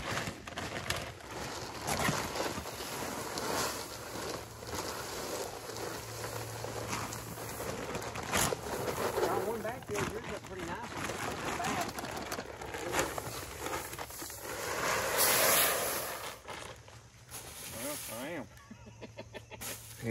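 Shelled deer corn poured from bags, rattling into a wooden feeder trough and scattering onto leaf litter, with voices now and then, loudest about three-quarters of the way through.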